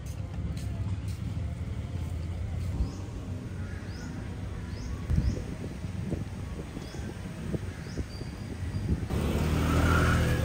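Steady low rumble of street traffic with a few short, rising high chirps between about four and seven seconds in. Near the end it gives way to the louder engine and road rumble heard inside a moving bus.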